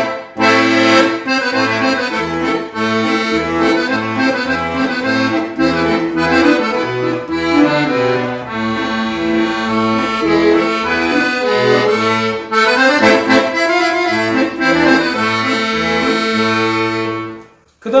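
Excelsior 37-key, three-reed piano accordion played on its right-hand master register, all three reed sets sounding together, carrying a melody over an alternating bass-and-chord accompaniment from the left-hand buttons. The playing stops shortly before the end.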